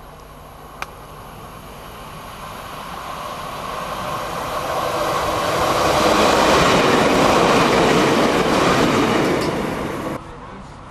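Class 150 Sprinter diesel multiple unit approaching and passing, its engine and wheel-on-rail noise growing louder over the first few seconds and loudest as it goes by about six to nine seconds in.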